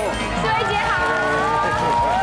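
Voices speaking in a greeting, over background music.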